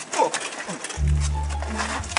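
A man's strained, drawn-out cry that falls in pitch, then background music with a deep, steady bass line comes in about a second in.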